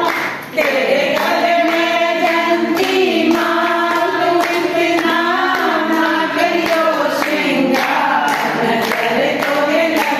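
A group of voices singing a song together, with sustained, wavering notes. The singing drops out briefly just after the start and then carries on.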